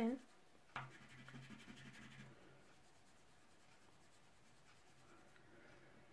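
Faint rubbing of soft pastel on paper as it is blended with a fingertip, starting with a small click a little under a second in and lasting about a second and a half, then near silence.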